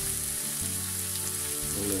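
Whole ham and chopped onion sizzling steadily in hot fat in a frying pan.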